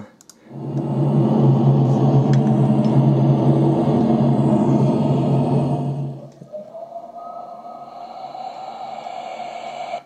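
Synthesized intro music of a YouTube video playing through computer speakers. It is a loud, sustained low droning chord for about five seconds, then drops to a quieter, higher held tone.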